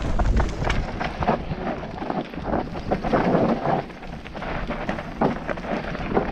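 Mountain bike tyres skidding and crunching over loose dirt and stones on a steep descent, with many small clattering hits from the bike over the rough ground. A low rumble of wind on the camera microphone runs underneath, heaviest at the start.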